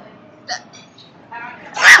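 A woman's voice: a brief vocal sound about half a second in, then a loud exclamation, 'Ah', near the end.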